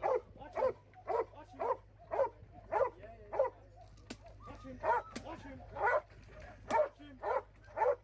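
A female Doberman protection dog barking in a steady series, about two barks a second, with a pause of about a second a little past the middle.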